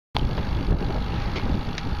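Wind buffeting the microphone of a camera carried on a moving bicycle: a loud, steady rush of noise, heaviest in the low end, that cuts in suddenly just after the start.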